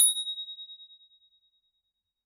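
A single ding sound effect: one bright, high bell-like tone struck once and ringing away over about a second.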